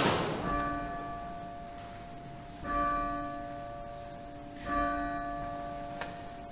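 A bell struck three times at the elevation of the consecrated bread during the Eucharist. The first stroke comes right at the start, the others about two and a half and four and a half seconds in, and each rings on, overlapping the next.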